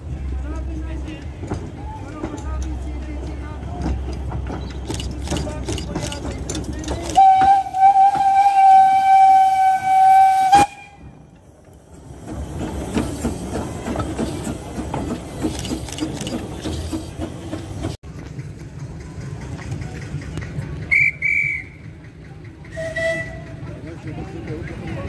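Small narrow-gauge steam locomotive sounding one long whistle blast of about three and a half seconds, a steady tone that cuts off suddenly, as it runs past. Rumble of the locomotive before the blast, and two short higher toots near the end.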